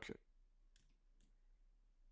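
Near silence with two faint computer mouse clicks about half a second apart, a little under a second in.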